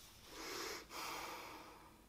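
A woman breathing faintly near the microphone: two soft breaths, one about a third of a second in and the next just under a second in, each about half a second long.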